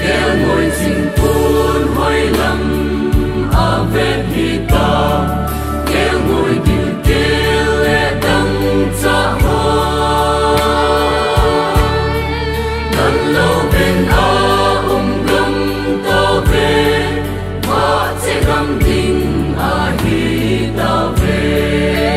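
Mixed choir of men and women singing a gospel hymn in harmony over a steady instrumental backing with a low bass and regular beat.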